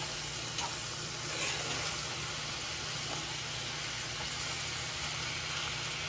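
Blanched green beans and garlic sautéing in a cast-iron pan, a steady sizzle, while a wooden spoon stirs them with a few light knocks.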